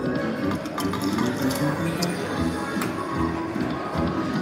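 Video slot machine playing its bonus-round music and jingles during free spins, with short clicks and chimes as the reels land, over casino chatter.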